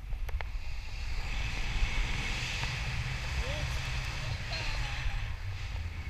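Airflow buffeting the microphone of a camera held out in flight under a tandem paraglider: a steady low rumble with a rushing hiss that swells about half a second in and eases near the end.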